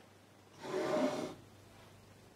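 A person's short breathy exhale, like a sigh, lasting under a second and starting about half a second in.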